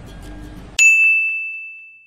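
A single bright chime, an edited-in sound effect for a logo card. It strikes suddenly about a second in and rings out, fading away over a little more than a second. Before it there is only faint kitchen background.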